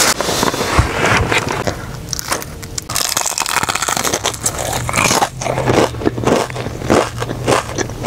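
Crispy batter of a Jollibee fried chicken drumstick crunching as it is bitten and chewed close to a clip-on microphone. There are many sharp crunches from about three seconds in, over a low steady hum.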